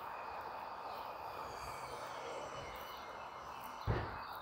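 Steady outdoor city street ambience: a distant traffic hum with faint bird chirps above it, and a soft thump near the end.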